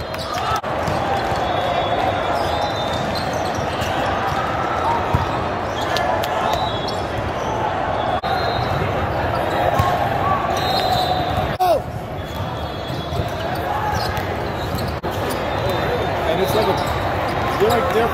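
Indoor volleyball rallies in a large, busy hall: a constant hubbub of players' calls and spectators' voices, with sharp ball hits and short sneaker squeaks on the sport court.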